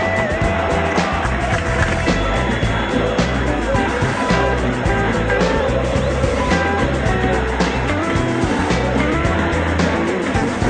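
Background rock music with a steady beat, laid over the match footage.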